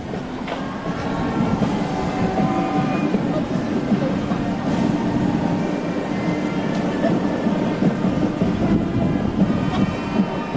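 Busy street noise at a parade route: a steady low rumble with a few held tones running through it, and indistinct crowd voices.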